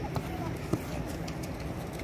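Outdoor background noise with faint children's voices and two short knocks in the first second.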